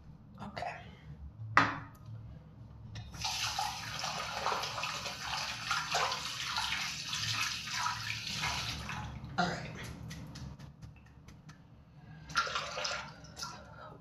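Bathroom tap running for about six seconds, water splashing in the basin. A sharp click comes shortly before it, and a shorter burst of similar noise comes near the end.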